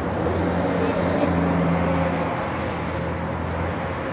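Street traffic: a motor vehicle's engine hums steadily and low over road noise. It is loudest a second or two in and fades out near the end.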